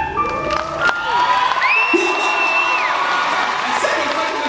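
A live audience cheering and applauding, with high screams and whoops over the clapping; one long high scream comes near the middle. The last held chord of the song stops at the start.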